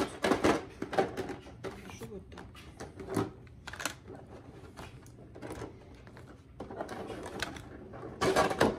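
Glass cosmetic jars and metal-capped bottles clicking and clattering as they are handled and set down one by one in a plastic tray and a gift case. The knocks come in clusters, most of them in the first second and again around three seconds in.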